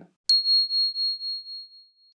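A single high bell-like ding, struck sharply about a quarter of a second in and dying away with a slight waver over nearly two seconds. It is an on-screen sound effect cueing the answer as it appears.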